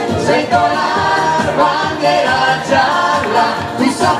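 Live pop dance music: singers with microphones performing over backing music with a steady beat, played through PA speakers.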